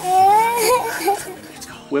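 A child's high-pitched, wavering vocal cry lasting about a second, without words; a gasp and laugh follow near the end.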